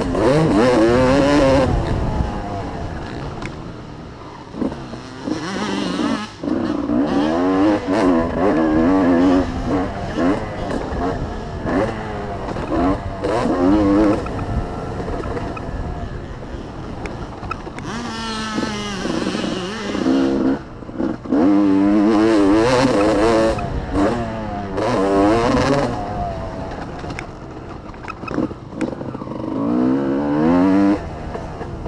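Dirt bike engine on a motocross track, revved up and down through the gears, its pitch repeatedly climbing and then dropping as the throttle is opened and shut, with a few brief dips where the throttle is chopped.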